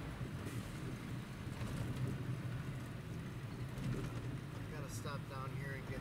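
Truck engine and road noise heard from inside the cab while driving, a steady low rumble.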